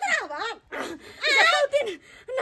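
Speech only: a woman's voice talking.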